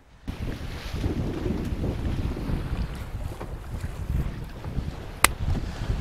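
Wind buffeting the microphone over the rush of sea water along the hull of a sailboat under way in fresh wind, with one sharp click about five seconds in.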